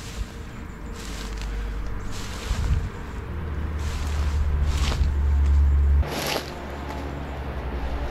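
A deep rumble like wind buffeting the microphone. It builds to its loudest in the middle and drops off suddenly about six seconds in, with a few short rustling swishes of someone brushing through undergrowth.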